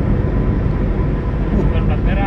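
Steady road and engine noise of a car cruising on a concrete highway, heard from inside the cabin.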